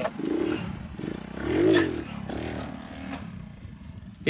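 Honda CD70's small single-cylinder four-stroke engine running, revved up and back down once about a second and a half in, then given a shorter blip of throttle.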